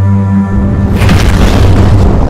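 Logo-intro sound design music: a low droning tone, then about half a second in a deep boom hits and a rumble carries on, with a brief rushing swell just after a second in.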